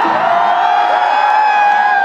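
Live concert music through a large outdoor PA, recorded from within the crowd: one long high note held steady for about two seconds and sliding down near the end, over crowd noise.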